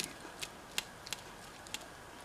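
A handful of faint, sharp clicks as a metal fork and knife tap and scrape against a foil-lined baking tray while cutting soft baked pumpkin.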